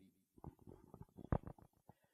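A quiet pause broken by a few faint, short clicks, spread through the middle of the pause. The strongest click comes a little after the midpoint.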